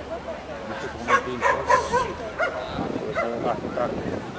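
A dog barking and yipping repeatedly in short, sharp barks, with a quick run of the loudest barks a little after a second in.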